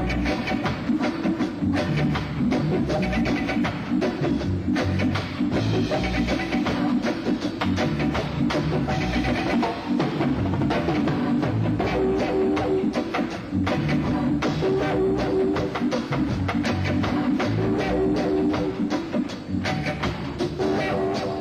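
Reggae band playing with a steady drum beat, bass and electric guitar.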